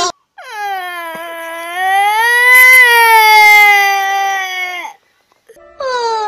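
A little girl's crying wail: one long cry of about four and a half seconds that rises in pitch, then falls away and stops abruptly. A new voice starts just before the end.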